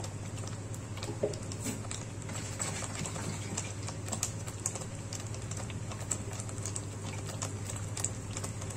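Thick tomato-based butter chicken gravy simmering in a pan, its bubbles breaking in irregular small pops and clicks over a steady low hum.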